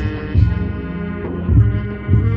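Marching band holding slow, sustained low brass chords, with deep drum hits about a second apart; the sound is heavy in the bass.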